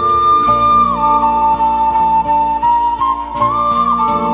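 Bansuri (Indian bamboo flute) playing a slow melody of long held notes, one sliding down in pitch about a second in and another bending near the end, over a band accompaniment of sustained low notes and light percussion.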